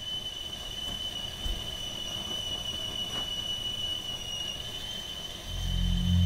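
Stovetop whistling kettle whistling at the boil: one steady high whistle that slowly grows louder over a low rumble. A deep music drone comes in near the end.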